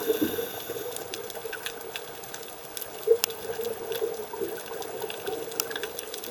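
Underwater sound picked up by a diver's camera: a steady low hum and watery hiss with scattered sharp clicks and crackles, one louder click about three seconds in. Diver's bubbles gurgle briefly at the start and fade.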